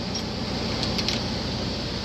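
Steady low drone of a reefer rig's diesel running, with a few light metallic clicks about a second in as the trailer's rear door latch is worked.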